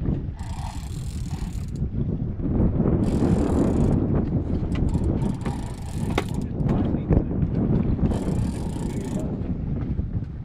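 Big-game conventional fishing reel being cranked to wind in line on a hooked yellowfin tuna, with scattered sharp clicks from the reel, over wind buffeting the microphone.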